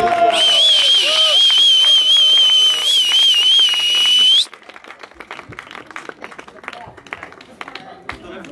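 A loud, shrill whistle from the crowd, wavering in pitch and held for about four seconds, then cutting off. Scattered hand clapping follows as the song ends.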